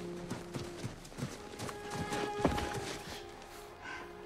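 Many hurried footsteps crunching on packed snow, over a film score of sustained tones. A single sharp click stands out about two and a half seconds in.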